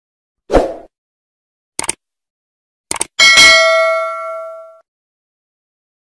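A short low thump, two quick clicks, then a loud bell-like ding that rings with clear overtones and fades out over about a second and a half.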